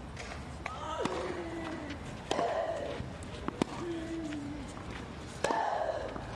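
A tennis serve and rally: a racket strikes the ball about five times, roughly a second apart, and a player grunts with several of the shots. The first grunt, on the serve, falls in pitch.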